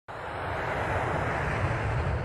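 Jet aircraft engine noise: a rushing sound that swells over the first second and then holds, over a deep rumble.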